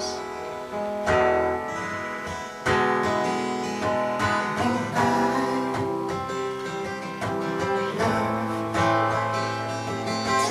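Solo acoustic guitar played alone in an instrumental break, with no singing: strummed chords struck every second or two, with picked single notes ringing between them.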